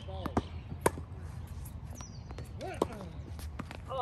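Tennis ball struck back and forth in a rally: two quick knocks near the start, the second a close racket hit and the loudest sound, then a return hit about three seconds in, with short vocal sounds from the players.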